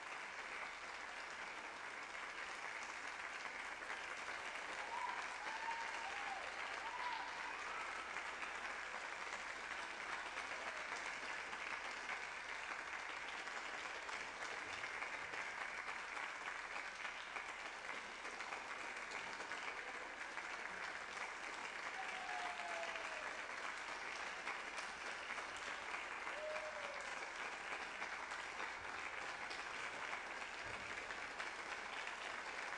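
Concert audience applauding steadily through a curtain call, with a few short calls sliding up and down over the clapping.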